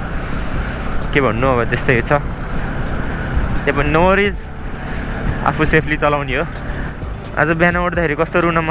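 Short phrases of a man's voice over background music, with the steady low noise of a Bajaj Pulsar NS200 motorcycle being ridden underneath.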